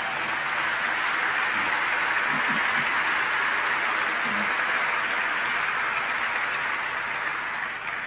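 Large audience applauding, starting suddenly and dying away near the end.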